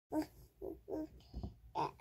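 Five short vocal sounds in quick succession, one every few tenths of a second.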